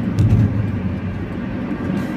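Steady low drone of engine and road noise inside a Fiat Fiorino van's cabin while it drives along a highway.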